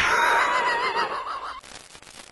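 Horse whinny sound effect: one loud, wavering call lasting about a second and a half, fading out near the end.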